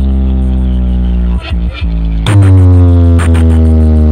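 Loud electronic music with heavy sustained bass notes played through a large DJ speaker-box stack during a speaker check. The music dips briefly twice in the middle, then a louder bass note comes in about two seconds in.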